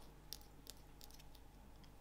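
Near silence with a few faint clicks and light handling noise as tying thread is wrapped over a foam strip on a fly hook.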